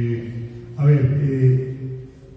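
A man speaking slowly into a handheld microphone, his words coming in two long stretches with held, level-pitched syllables.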